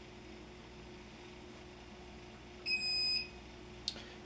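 A NeoDen 3 pick-and-place machine's controller gives a single beep of about half a second, acknowledging that the job file has been loaded, over the steady hum of the machine. A short click follows just before the end.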